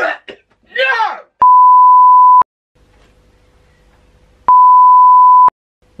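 Two edited-in electronic bleep tones, each a steady single pitch lasting about a second, the second coming about two seconds after the first ends, of the kind dubbed over outtakes to censor words. A short burst of a man's voice comes just before the first bleep.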